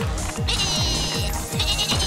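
Upbeat electronic music with a steady drum beat, about four beats a second. Over it a cartoon sheep gives a wavering, high bleat about half a second in, with a shorter high sound near the end.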